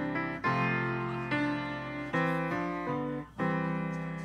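Slow instrumental piano music, with struck chords that fade and change about once a second and a brief pause just after three seconds in.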